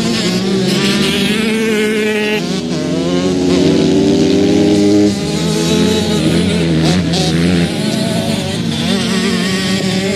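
Small junior motocross bike's engine revving as it rides past on a dirt track, pitch rising and falling with the throttle, loudest about five seconds in, then dropping off sharply and easing again near the end.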